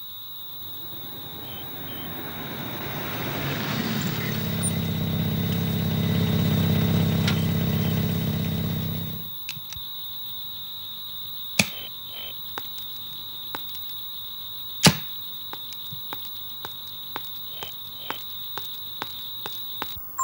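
A car engine running as the car drives up: the rumble grows louder for about seven seconds, then cuts off suddenly about nine seconds in. After that, a steady high-pitched tone continues, with scattered sharp clicks and two louder knocks.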